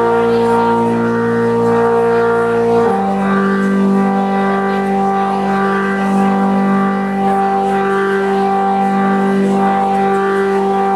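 Electronic keyboard holding sustained, organ-like chords that drone steadily, moving to a new, lower-rooted chord about three seconds in.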